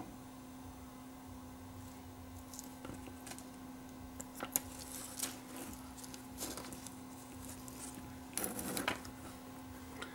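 Faint handling noises from fingers turning a tiny viewfinder CRT and its wiring: a few soft clicks, then a brief rustle near the end, over a steady low hum.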